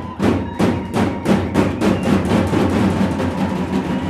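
Arabic zaffe drumming: large double-headed tabl drums beaten with sticks in a fast, steady rhythm, about three strong beats a second, over a held tone.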